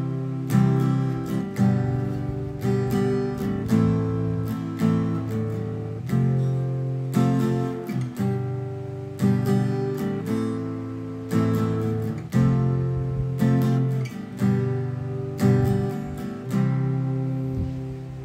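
Fender cutaway steel-string acoustic guitar strummed in a down, up, up, down pattern, working through the chords C, G, A minor and F with a change about every two seconds.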